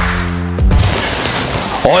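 Editing sound effect at a cut to black: a deep boom with a low humming tone that stops about half a second in, followed by a steady hiss that carries on as a man starts talking near the end.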